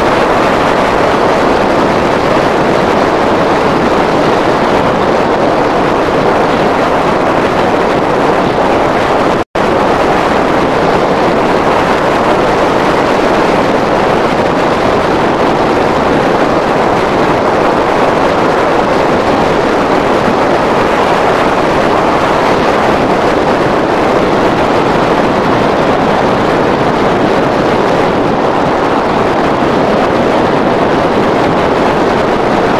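Steady, loud wind noise on the microphone from the airflow past a hang glider in flight. The sound cuts out for an instant about nine and a half seconds in.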